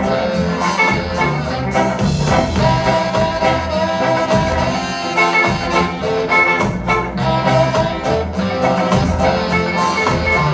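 Live ska band playing an instrumental passage: electric guitar, saxophones, upright bass and drum kit, with a steady beat.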